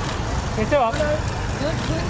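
Outdoor street noise: a steady low rumble of road traffic, with a voice calling out briefly about a second in and again near the end.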